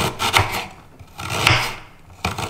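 A kitchen knife slicing through fresh ginger root on a wooden cutting board: a few cutting strokes, the blade meeting the wood, the longest about one and a half seconds in.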